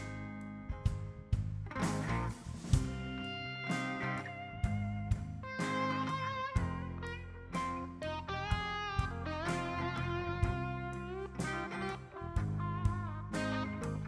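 Live band in an instrumental break: an electric lead guitar plays held notes that bend and waver in pitch, over acoustic guitar, bass guitar and a steady drum beat.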